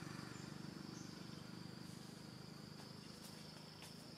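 Insects trilling in the forest: one steady, high, unbroken tone, faint, with a low pulsing hum beneath it.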